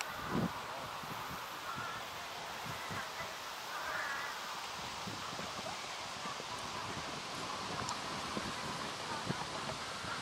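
Soft, irregular thuds of a horse's hooves cantering on a sand arena, the strongest about half a second in, over steady outdoor background noise with faint distant voices.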